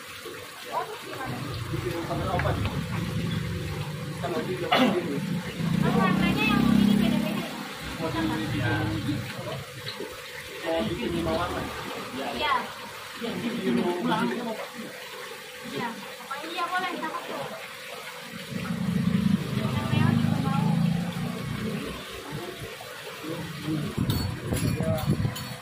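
Indistinct conversation among several people over a steady trickle of running water from aquarium filters and pumps, with occasional low rumbles.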